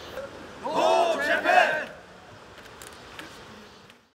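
A group of people shouting a slogan together in one short burst, about half a second in; then faint background noise that fades out near the end.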